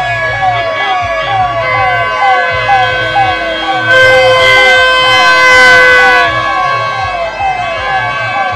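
A siren-like rising whoop, repeating about twice a second, over loud procession music with sustained notes and a steady low drum beat. It gets louder and brighter between about four and six seconds in.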